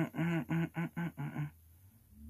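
A man humming a tune in short, repeated staccato notes, which stops about one and a half seconds in.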